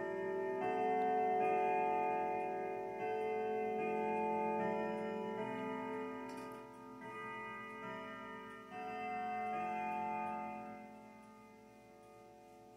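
Grandfather clock chiming a tune on its chime rods, the notes ringing on and overlapping, then dying away over the last few seconds, with the clock ticking underneath. The hands stand near twelve, so this is its on-the-hour chime.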